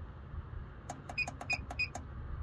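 Push buttons on an SMA Sunny Island inverter's control panel being pressed in quick succession, about nine short clicks in under a second starting about a second in, as the password value is stepped up to 23.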